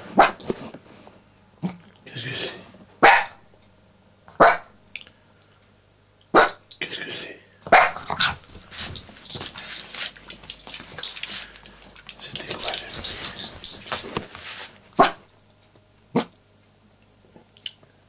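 Small dog barking, about a dozen sharp barks at uneven intervals, coming thickest in the middle, some with a growl. Between barks the small bell on its collar jingles.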